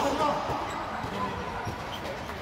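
Volleyball game play on a gym court: a ball being struck and bouncing with a couple of dull thuds, while players call out, loudest right at the start.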